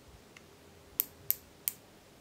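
Ratchet stop on the thimble of a Shahe 0-25 mm digital micrometer clicking three times, sharp clicks about a third of a second apart. The spindle has closed on a 6 mm end mill shank and the ratchet is slipping at measuring force.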